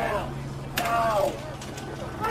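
Shouting from a crowd in a street riot, a few loud, short shouts over a steady low hum.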